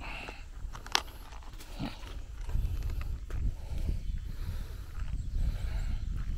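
Low rumbling buffeting and handling noise on a hand-held phone's microphone while walking outdoors, heavier in the second half, with one sharp click about a second in.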